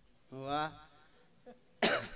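A man's short voiced sound into a microphone, then a single sharp cough just before the end.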